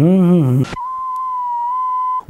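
A man's drawn-out, wavering vocal note cuts off suddenly under a second in, giving way to a steady high-pitched television test-card tone, a single held beep.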